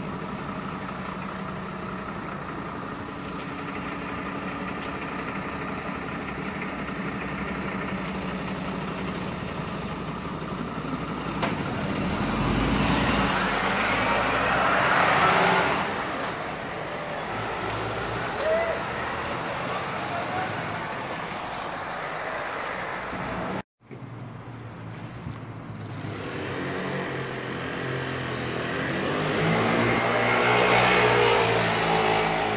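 City street traffic: an engine hums steadily, then a vehicle passes louder about 12 to 16 seconds in, with more traffic building near the end. The sound drops out for an instant about two-thirds of the way through.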